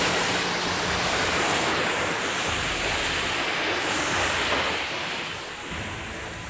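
High-pressure car wash wand spraying water onto a car's bodywork to rinse off foam: a steady hiss of spray and splashing water that eases slightly in the last second.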